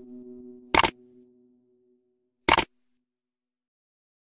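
A fading musical tone dies away over the first two seconds. Two sharp click sound effects follow, each a quick double click, about a second in and again about a second and a half later, as the animated like and subscribe buttons are pressed.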